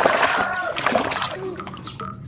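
A hand sloshing and scrubbing a toy animal figure in foamy water, with splashing that dies away toward the end.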